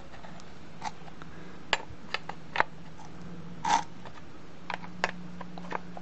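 Scattered metal clicks and clinks of a chainsaw scrench's socket working on the bar nuts of a Stihl chainsaw as they are tightened, about eight in all, the loudest a little before the midpoint. A faint steady hum lies under them.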